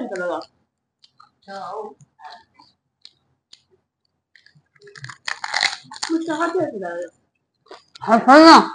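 Crisp pani puri shells being bitten and chewed, with small scattered crunching clicks. Short stretches of a person's voice come in between, the loudest about five to seven seconds in.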